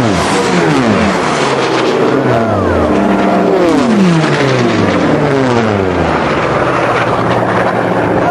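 Several Unlimited-class piston-engined racing planes passing low and fast one after another. Each engine note drops in pitch as the plane goes by, and the passes overlap throughout.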